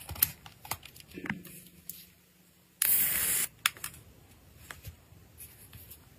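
Wrapping paper being folded and creased by hand around a small box, with scattered light crinkles and taps. About three seconds in, a loud hiss lasts just under a second.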